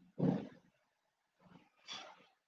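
A person's voice-like sounds through a video-call microphone in short bursts: the loudest just after the start, then two fainter ones near the end, with dead silence between them.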